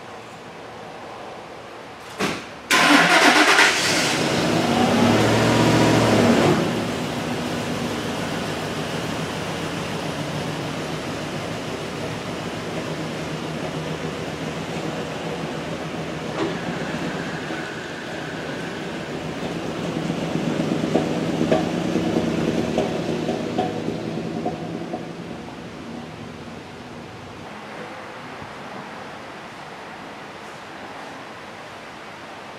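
A 2005 Ford Super Duty's 5.4-litre three-valve V8, an engine found to be out of time, is cranked and catches about three seconds in after a short knock, runs loud for a few seconds, then settles to a steady idle. It grows louder again for a few seconds as the truck pulls away, then fades.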